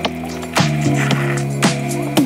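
Instrumental background music with a steady beat: sharp drum hits about twice a second over sustained bass and keyboard notes.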